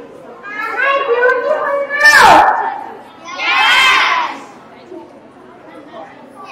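A young child's voice through a microphone and loudspeaker, in three short phrases, the loudest about two seconds in with a sharp pop on the microphone.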